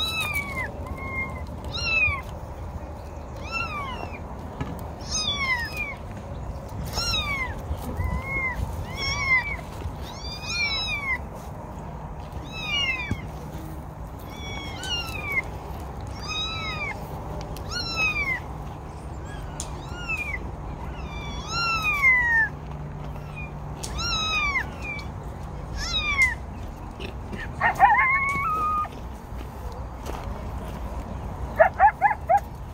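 Recorded cat meows played through the horn speakers of a FOXPRO electronic predator call: a run of short meows, each rising then falling in pitch, about one a second. A different, jagged call comes in near the end.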